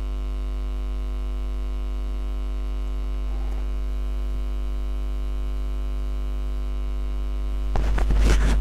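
Steady electrical mains hum: a low drone with a buzzing stack of overtones, holding unchanged. Near the end a sudden loud burst of noise cuts in.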